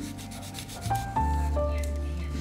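Charcoal stick scratching across paper in quick repeated strokes, busiest in the first second, over background music with held notes.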